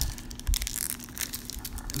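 Hands crinkling and tearing open the wrapper of a 2016 Panini Diamond Kings baseball card pack: irregular crackling and rustling, with a soft knock about half a second in.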